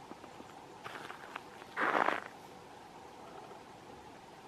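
A few light clicks about a second in, then a short, louder crunching scrape about two seconds in.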